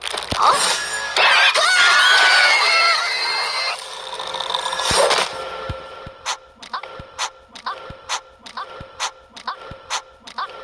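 A loud burst of cartoon music with a wavering, shrill, scream-like sound for about five seconds. It is followed by a quieter, even series of short sucking clicks, about three a second, from a cartoon character drinking from a baby bottle.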